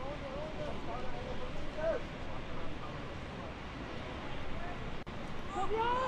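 Open-air football match ambience: voices calling out across the pitch and touchline over a steady background noise, with a louder rising shout near the end.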